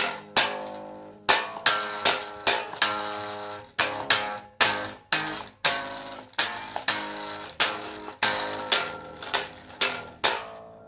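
Guitar being strummed: chords struck about twice a second in an uneven rhythm, each ringing out and fading before the next stroke.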